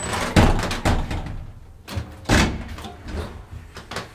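Doors of a 1968 Asea-Graham elevator being shut: several heavy clunks and a slam, the loudest about half a second in and another just after two seconds.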